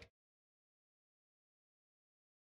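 Silence: the sound track cuts off abruptly right at the start and stays dead silent.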